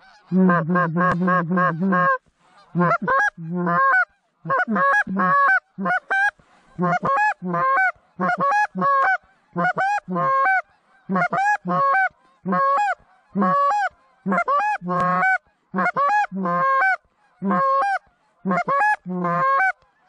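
Hand-blown goose call calling to passing geese: a fast run of short clucks for about two seconds, then a steady series of two-note honks that each break from a low note to a high one, about one to two a second with short pauses.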